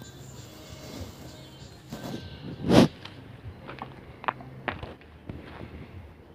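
Footsteps crunching on gravel, with scattered scuffs and knocks; one louder crunch comes a little under three seconds in.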